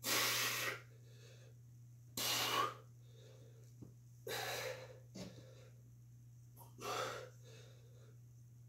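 A man's hard, hissing breaths during kettlebell rows, four in all, about one every two seconds, each lasting around half a second. A steady low hum runs underneath.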